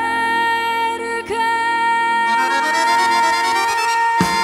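Live Italian tango band with accordion playing while a woman's voice holds one long high note from about a second in, with an ascending run of notes climbing underneath in the last two seconds.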